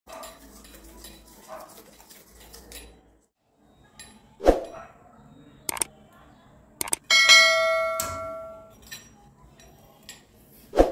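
Metal clinks and knocks from a chrome kitchen tap and its wall fitting being handled, with one loud knock about halfway through. Two sharp clicks follow, then a bright ringing chime about seven seconds in that fades out over a second and a half.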